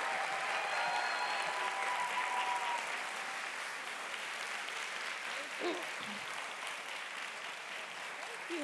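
Audience applauding, a steady spread of clapping that slowly dies down toward the end.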